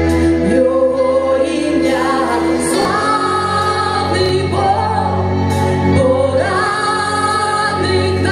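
Live worship music: a woman sings lead through a microphone with long held notes, backed by electric bass and other accompaniment, the bass line shifting about three seconds in.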